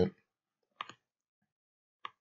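Two faint computer clicks in quick succession, about a second in.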